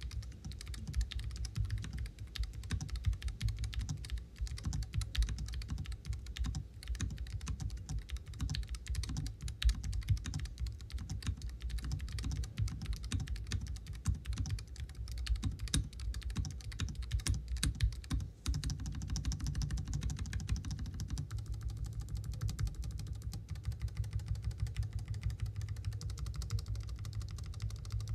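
Fast, continuous typing on the Ajazz AK832 Pro, a low-profile mechanical keyboard with Outemu switches and PBT double-shot keycaps.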